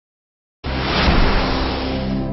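Logo intro sound effect: a loud rushing whoosh over a low steady drone, starting abruptly about half a second in.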